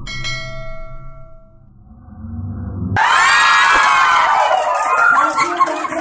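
A bright bell-like ding rings out and fades over about two seconds, the sound effect of the subscribe button being clicked. About halfway through, a loud crowd of children cheering and shouting comes in and holds.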